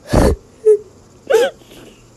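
A person's voice making non-speech sounds: a loud breathy huff at the start, then short whiny squeals that rise and fall in pitch.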